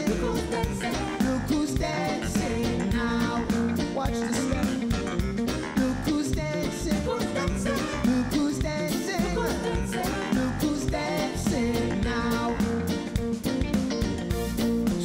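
Live reggae band playing with electric bass, guitar and drum kit, and a man's singing voice over the groove.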